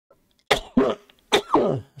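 A man coughing three times in quick succession, the last cough longer than the others. He is unwell.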